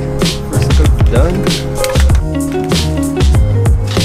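Background music with a steady beat, deep sustained bass and drums.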